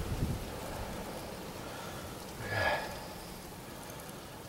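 Wind and blowing snow on the microphone, a steady hiss, with a brief louder sound about two and a half seconds in.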